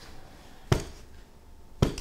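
Two firm back blows from a hand on the back of an infant first-aid manikin lying face-down over a lap: two sharp thumps about a second apart. This is the back-blow technique for a choking baby, and the instructor judges it the right force.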